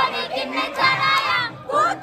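A group of young women shouting and singing together, loud and close, with overlapping excited voices.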